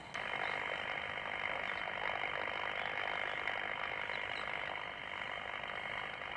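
Steady outdoor street ambience: an even hiss with no distinct events, cutting in abruptly right at the start and holding level throughout.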